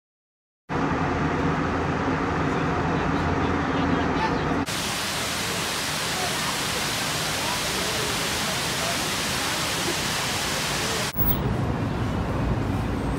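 Water rushing down a terraced concrete fountain cascade: a steady, even roar that starts abruptly about five seconds in and cuts off abruptly about a second before the end. It is preceded by a few seconds of outdoor ambience with voices.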